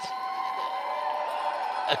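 Arena crowd applauding and cheering, with several long held whoops over the applause.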